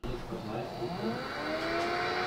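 A small electric motor spinning up: a steady whir whose pitch rises over about a second and then holds.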